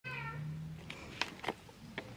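A pet cat meowing once, a short call falling in pitch, followed by a few sharp clicks.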